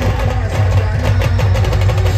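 A live band playing loud music: rapid, dense drumming on hand-carried drums over a steady deep bass and a sustained melody line.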